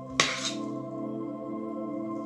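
Slow ambient background music with sustained drone-like tones. About a fifth of a second in, a metal spoon gives one sharp clink against the stainless steel pot as it scoops out filling, ringing briefly.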